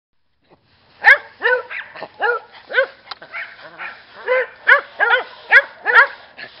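Dogs barking in play: a run of short, sharp barks, about two a second, starting about a second in.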